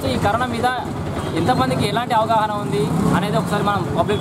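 A man speaking steadily to the camera, with street traffic noise behind him.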